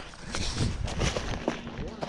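Hurried footsteps and rustling through tall weeds, with knocks from a body-worn camera swinging. Near the end a steady low buzz sets in: a bee flying close by.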